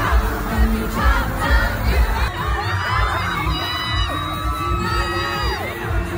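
Arena concert crowd screaming and cheering close by over amplified pop music with a steady bass beat. About halfway through, the beat fades back and the high screams stand out.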